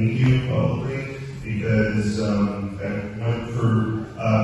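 A man talking steadily into a handheld microphone, his voice amplified over a PA system.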